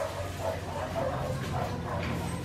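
A litter of five-week-old Australian Shepherd puppies making short, high yips and whines, several a second, over a steady low hum.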